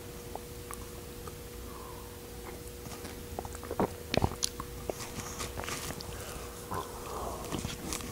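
Quiet room with a faint steady hum, a few soft clicks and taps of small tasting glasses being handled on a tabletop, the sharpest a little after four seconds in, and faint mouth sounds of sipping whiskey.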